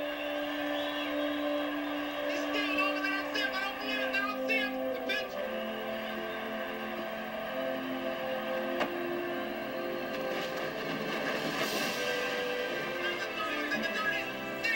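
Orchestral film score with long held chords that shift and build, over a cheering crowd and shouted announcer calls.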